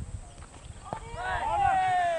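A cricket bat strikes the ball with a single sharp knock about a second in. Several players then shout loudly, with one long call falling in pitch, as the batsmen set off for a run.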